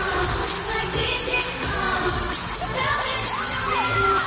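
K-pop song with singing and a steady beat, played loud through an arena sound system, with the crowd cheering over it.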